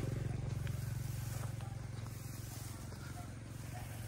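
Faint low steady hum of a distant motor vehicle's engine, slowly fading.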